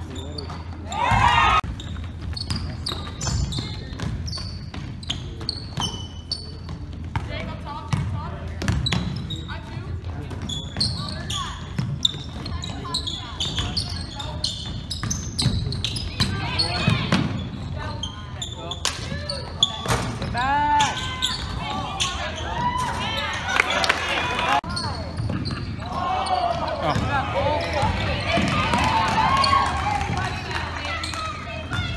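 Basketball dribbled and bouncing on a hardwood gym court during play, with players and spectators calling out, the calls busiest in the second half.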